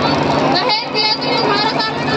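A girl speaking into a handheld microphone, her voice amplified over loudspeakers, with a steady low hum underneath.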